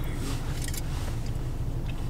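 Steady low rumble of a car heard from inside the cabin, with a few faint rustles and clicks about halfway through.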